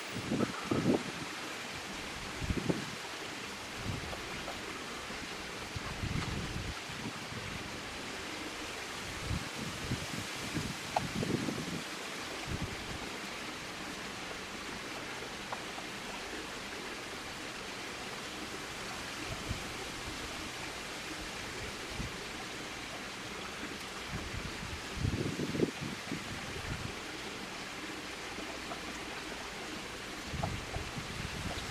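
Steady outdoor background hiss, broken now and then by low rumbling gusts of wind on the microphone, the strongest near the end.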